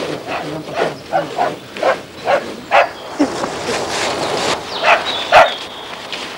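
A small dog barking in a run of short, irregular barks, over the rustle of feet moving through dry fallen leaves.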